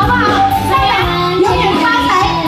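Woman singing into a microphone, amplified, over music accompaniment with a steady beat.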